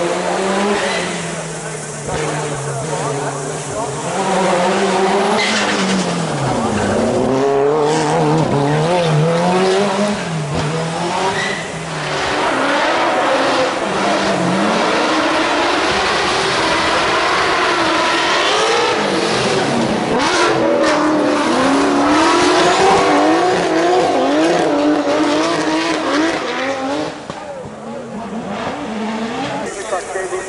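A drift car's engine revving hard, rising and falling in pitch again and again as it is held on the limiter through the corners, with tyres squealing as it slides through the bend. The noise eases off near the end.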